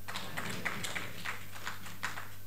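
A steady low electrical hum through the microphone and speaker system, with faint irregular light ticks and taps over it.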